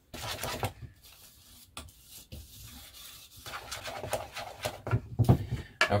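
A hand utensil stirring and mashing softened butter and powdered sugar in a mixing bowl to cream them: irregular scraping and rubbing with a few light knocks, louder in the last couple of seconds.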